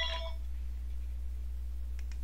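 A ringing tone of several steady pitches dies away within the first half second. After that only a steady low hum remains.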